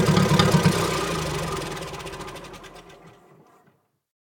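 Tractor engine running with an even beat, fading out and stopping shortly before the end.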